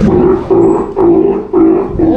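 Baby Steller sea lion calling four times in quick succession, each call a steady-pitched low bawl of about half a second.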